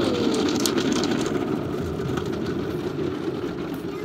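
Automatic car wash heard from inside the car's cabin: a steady, muffled rush of water and coloured foam being sprayed over the windshield and body, with scattered light ticks.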